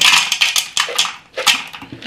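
Clear plastic bag of dry pet food rustling and crinkling loudly as it is opened and handled, with sharp crackles, dying away near the end.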